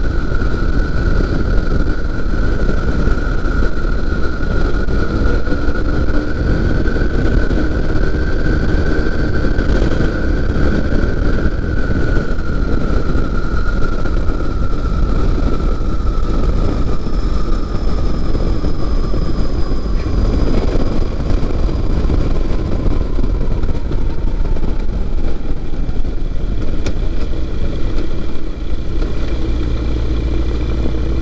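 Flexwing microlight's engine and propeller running at low power through the final approach, touchdown and landing roll, with heavy wind noise on the open-cockpit microphone. The engine note sinks slowly in the second half as the aircraft slows on the runway.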